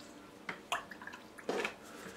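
A paintbrush being rinsed in a small pot of water: a few short splashes and drips, the longest one about a second and a half in.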